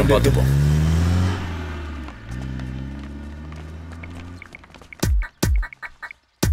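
A police van's engine revving up as it pulls away, then running steadily and fading. Near the end come two deep booms of film score that fall in pitch.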